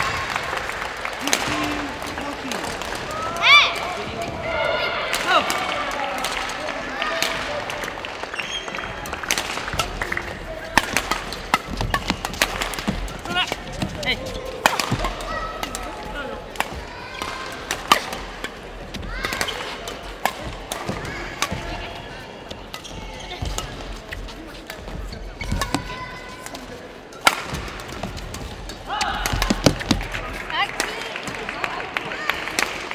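Badminton play in a sports hall: sharp racket hits on the shuttlecock at irregular intervals of about a second, with short squeaks and players' voices and hall chatter behind.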